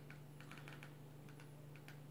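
A few faint, irregularly spaced clicks of the Nexus Player remote's buttons as the on-screen keyboard is worked key by key, over a low steady hum.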